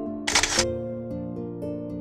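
Gentle instrumental background music with plucked-string notes, cut across about a quarter second in by a brief camera-shutter click sound effect marking a photo transition.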